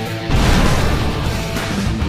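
Theme-music sting for a logo graphic: a dense noisy rush with a deep rumble, starting a moment in and held steady.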